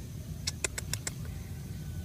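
Four quick light clicks from a wire-mesh rat trap being handled, over a steady low rumble.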